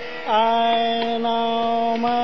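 Male Hindustani classical vocalist singing Raag Amritvarshini, holding one long steady note that comes in about a quarter second in, over harmonium and light tabla accompaniment.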